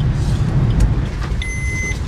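Low rumble of a car's engine and tyres, heard from inside the cabin while driving slowly. Near the end comes a single steady, high electronic beep lasting about half a second.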